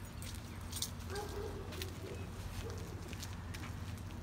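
Ford 4.6 L V8 of a 1997 Mustang GT idling steadily after a cold start, a low, even exhaust note with the mufflers removed so it runs open after the catalytic converters.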